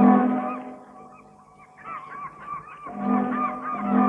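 Harbour sound effects: seagulls crying over and over, with a deep ship's horn sounding twice, once at the start and again about three seconds in.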